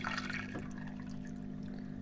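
Water trickling and dripping in an aquarium filter chamber as the hydroponics pump draws it through, over a steady low pump hum. A brief brighter splash of water comes in the first half second.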